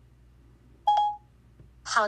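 A single short electronic beep from an iPhone about a second in, a clean steady tone, as Siri acknowledges the reply and goes on to send the LINE message.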